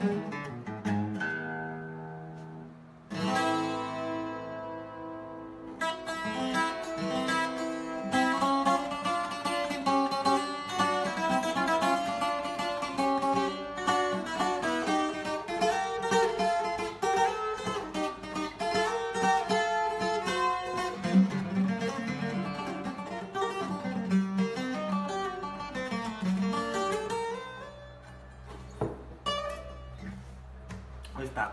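Handmade Fortaleza twelve-string acoustic guitar (docerola) played solo in a requinto style: a chord about three seconds in is left ringing, then fast picked melodic runs follow, thinning out near the end.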